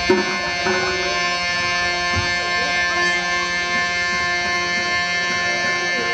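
Traditional stage music: a steady, sustained harmonium chord held throughout, with a wavering melody line over it in the first few seconds. A single short knock comes right at the start.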